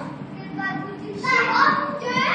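Several children's voices chattering and calling out, growing louder a little past the middle.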